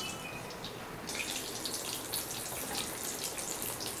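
Potato chunks deep-frying in hot oil, a steady sizzle that grows fuller about a second in.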